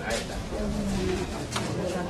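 People talking quietly among themselves, with a short low steady bird call a little after half a second in.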